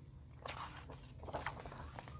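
Faint paper rustles from the pages of a hardcover picture book being turned, a few soft brushes spread over the two seconds.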